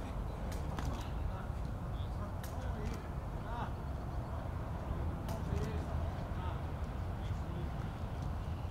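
Outdoor training-pitch ambience: a steady low rumble, faint voices of players, and a handful of sharp thuds as footballs are kicked in a passing drill.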